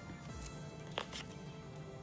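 Faint background music of steady held notes, with one light click about a second in.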